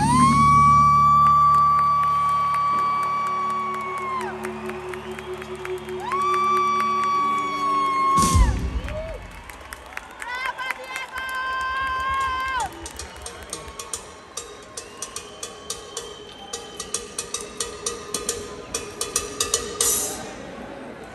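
A rock band's closing chord rings out and then cuts off about eight seconds in. Over it, a nearby fan gives three long, high, held whoops. Scattered clapping and cheering follow.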